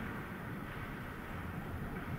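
Steady, even background hiss and low hum: the room tone of a quiet gallery hall, with no distinct events.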